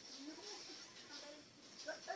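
Faint, indistinct voices in the background over a steady hiss.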